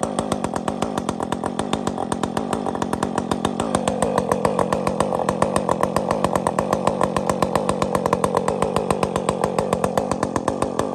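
Husqvarna 562 two-stroke chainsaw running at full throttle, cutting down through a large log. It runs with a fast, even pulse, and its pitch drops a little about four seconds in as the chain takes more load in the cut.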